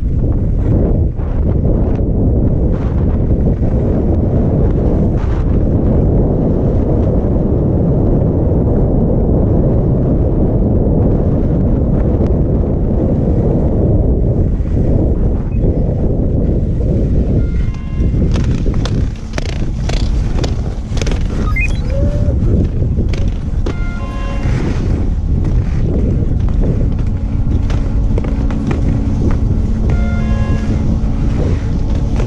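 Wind buffeting a helmet-mounted action camera's microphone as the skier slides downhill, with the skis hissing over the snow. In the second half the skier slows into the chairlift boarding area: clacks and scrapes of skis and poles, short repeated tones, and a steady hum near the end.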